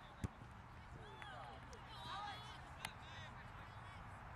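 Faint, distant shouts from players and sideline spectators at a soccer match, over steady low outdoor rumble. A sharp knock about a quarter second in, the loudest sound, and a second one just before the three-second mark, from the soccer ball being kicked.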